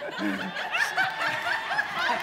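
People laughing: a quick, steady run of short chuckles, about five a second.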